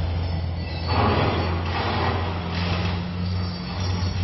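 Street traffic: a vehicle engine's steady low hum, with a swell of passing-vehicle noise in the middle.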